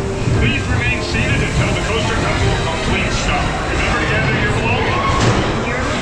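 Intamin steel roller coaster train rolling slowly on its track into the station at the end of the ride, a steady rumble of wheels on rail, with people's voices over it.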